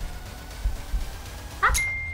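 Soft background music with a few dull low thumps, then near the end a quick rising chirp and a sharp hit: an edited-in sound effect leading into a reveal.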